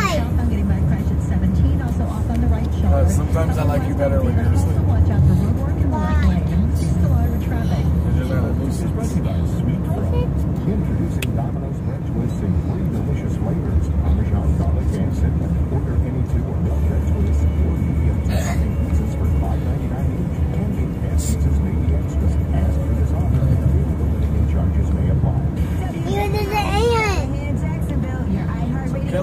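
Car radio playing a rap song with vocals, heard inside a moving car's cabin over a steady low road rumble.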